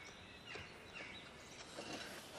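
Quiet outdoor background ambience with a few faint, short bird chirps.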